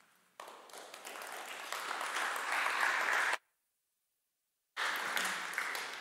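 Audience applauding, building up over about three seconds, then cutting off suddenly to dead silence for a little over a second before the applause picks up again.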